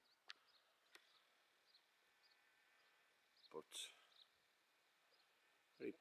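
Near silence: quiet open-air ambience with a few faint, short, high bird chirps and a couple of soft clicks in the first second.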